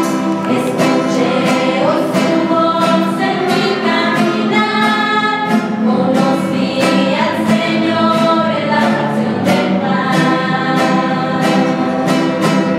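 A small women's church choir singing a hymn together, accompanied by strummed acoustic guitars and shaken tambourines keeping a steady beat.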